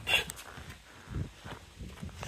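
Faint handling and movement noise from the person filming: soft rustles and a low thump about a second in as the phone is lifted, with no engine running.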